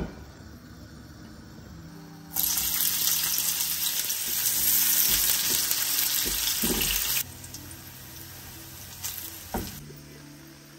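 Sliced onions sizzling loudly in hot oil in a frying pan, starting suddenly about two seconds in and cutting off abruptly about seven seconds in.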